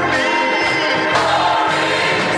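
Gospel song: singing over sustained Hammond organ chords, with a low bass line moving underneath.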